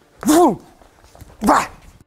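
Two short, loud shouts from a man, about a second apart, each rising then falling in pitch: yells given with strikes during a self-defense drill.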